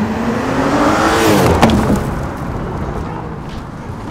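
A car driving past close by on asphalt: its engine note rises as it approaches and drops sharply as it passes, about a second and a half in. Tyre and road noise then fades away.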